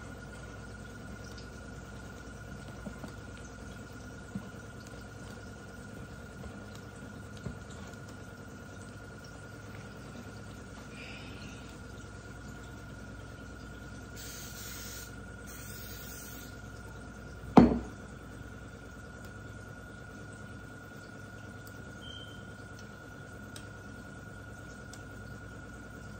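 Aerosol cooking spray hissing in two short spurts as it greases the waffle iron. A second later comes a single sharp knock, the loudest sound here. A faint steady hum with a thin high tone runs underneath.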